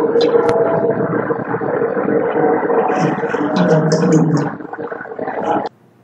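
Muffled voices and room noise from the lab demonstration recording, with a few light clicks. The sound cuts off suddenly near the end.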